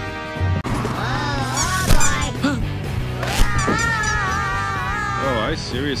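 Cartoon soundtrack music, then high-pitched character voices sliding up and down in pitch, ending in a long wavering held note. Two sharp hits land about two and three and a half seconds in.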